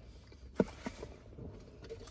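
Faint handling of a paperboard takeout box: a couple of soft clicks over a low steady hum.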